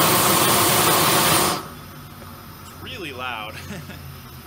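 Harbor Freight propane torch on full turbo trigger: a loud, steady rushing blast of propane flame, like a jet afterburner, that cuts off suddenly about a second and a half in when the trigger is released.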